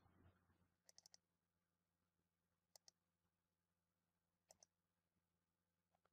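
Near silence, with three faint clusters of computer mouse clicks about two seconds apart.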